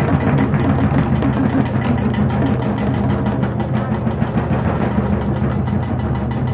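Fast, continuous drum roll on double-headed barrel drums, over a steady low drone.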